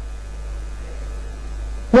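Steady low electrical mains hum with faint hiss underneath. No other sound stands out.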